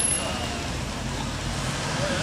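An SUV driving up on the street, its engine and tyres over a steady background of traffic noise.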